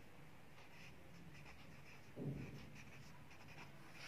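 Faint scratching of a ballpoint pen writing words on a workbook page, in short strokes. A brief soft low sound comes about halfway through.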